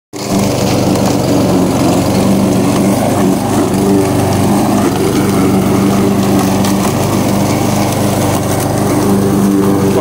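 Walk-behind petrol rotary lawn mower's small single-cylinder engine running steadily while mowing grass and leaves. The engine holds an even speed, running properly after being fixed.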